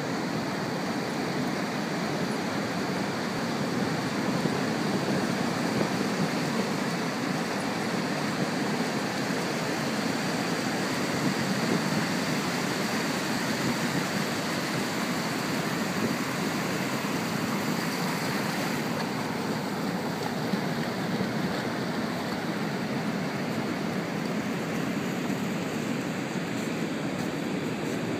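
Ocean surf breaking and washing up a sandy beach, a steady rushing noise.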